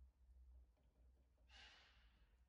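Near silence: room tone with a low hum, and one short, faint breathy noise about a second and a half in.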